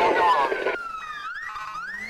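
A siren wailing: its pitch sinks slowly, then climbs again near the end. Voices chattering underneath cut off abruptly under a second in.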